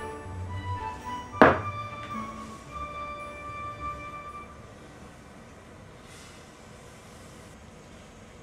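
Soft background music that fades out about halfway through. About one and a half seconds in there is one sharp knock as a packed mound of brown sugar is tipped from a bowl into a stainless steel saucepan.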